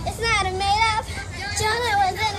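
Young girls singing, held notes with short breaks between phrases.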